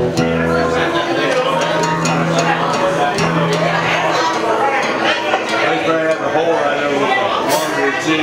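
Live band music in a bar: an acoustic guitar being strummed with held low notes under it, and people talking over the music.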